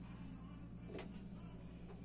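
Faint steady low hum, with a soft click about a second in and another near the end.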